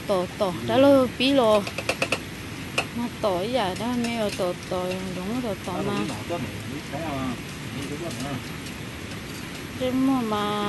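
Men talking in conversation, with a few sharp light clicks about two seconds in.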